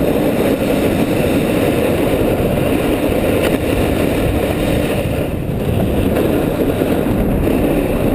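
Steady, loud wind rushing over an action camera's microphone during a snowboard run downhill, mixed with the hiss and scrape of the snowboard sliding over packed snow.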